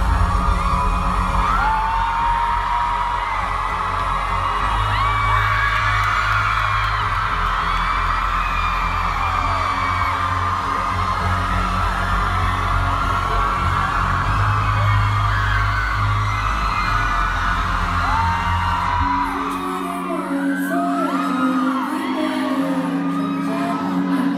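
Live pop band playing through a concert PA with heavy bass and drums, while audience members whoop and scream. About 19 seconds in, the bass and drums drop out, leaving held chords under more cheering.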